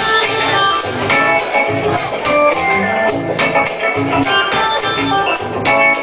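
Live early reggae band playing, with an organ-style keyboard carrying held chords over bass, drums and guitar in a steady beat.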